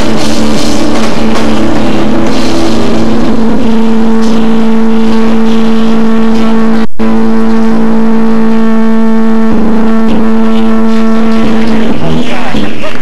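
Live rock band, played very loud with a distorted sound: drums and electric guitar for the first few seconds, then the drumming stops and one long sustained note rings on to the end. The sound cuts out for a split second about halfway through.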